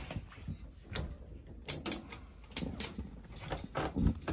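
A handful of irregular sharp clicks and knocks from the door and metal fittings of a Thetford built-in gas oven being handled.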